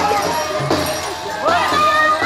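Several high voices singing an Andean carnival song together, with held and sliding notes, over the noise of a crowd.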